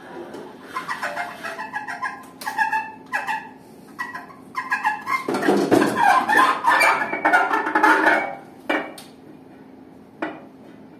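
Free-improvised saxophone and snare drum played with extended techniques: squeaky, bird-like pitched squeals and scrapes in short broken bursts, building to a dense loud passage about halfway through, then breaking off with one last short squeal near the end.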